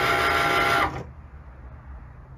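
Cricut Maker cutting machine's motors running as it moves its pen carriage and feeds the mat, a steady whir with several steady tones that stops about a second in.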